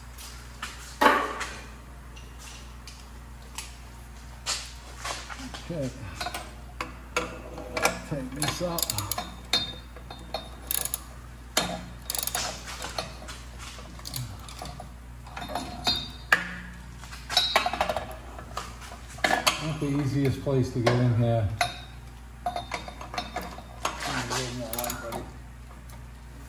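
Ratchet wrench with a deep 15 mm socket clicking in irregular runs, with metal taps and ticks, as it tightens the exhaust ball-flange nuts on a catalytic converter.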